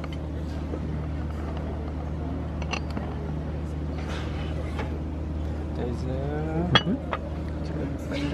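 Ceramic tableware clinking as lidded soup tureens and plates are set down on a wooden table, with a sharp clink near the end, over a steady low hum and faint voices.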